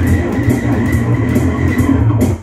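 Electric bass guitar playing a heavy rock line along with a rhythm backing track: steady low notes under an even beat.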